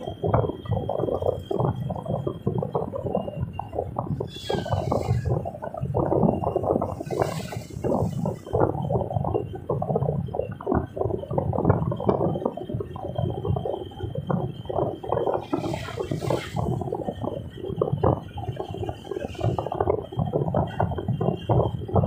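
Road noise inside a moving car: a continuous, uneven rumble from the tyres and body, with a few brief hissing swells.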